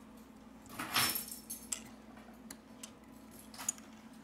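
Fine metal tweezers clicking and scraping against a smartphone's circuit board and flex-cable connectors: a few faint, light clicks, with a short scrape about a second in.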